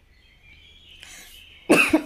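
Whole spices frying in hot oil in a pressure cooker, a faint sizzle as a ladle stirs them, then a person coughs once, loudly, near the end.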